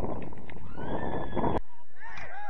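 Wind buffeting an outdoor camera microphone, with a drawn-out shout rising in pitch in the second half; the sound breaks off suddenly about one and a half seconds in.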